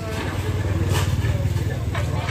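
A low, steady engine-like rumble under the voices of people talking.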